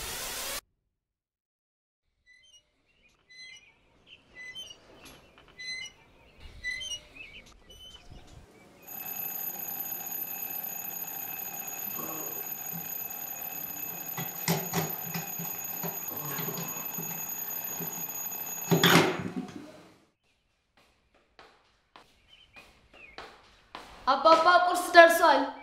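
An alarm clock rings steadily for about ten seconds in several high, fixed tones, then is cut off by a sharp knock. It is preceded by faint, evenly repeated high chirps.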